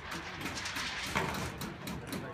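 A long sheet of steel roofing panel rattling and flexing as it is lifted and stood on end, with a louder clatter about a second in.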